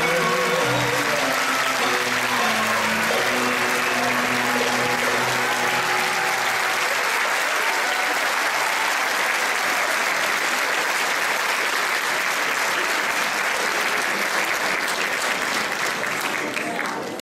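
Audience applauding steadily. At the start a singer's held final note with vibrato and the ensemble's closing instrumental notes ring under the clapping and fade out within the first few seconds. The applause tapers off near the end.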